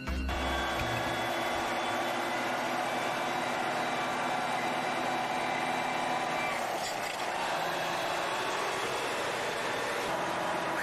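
Heavy truck's engine droning steadily with road noise, heard from inside the cab while overtaking a fuel tanker truck.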